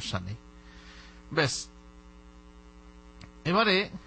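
Steady electrical mains hum in the recording, a buzz with evenly spaced overtones, heard in the pauses of a man's speech. Short spoken syllables break in right at the start, about a second and a half in, and near the end.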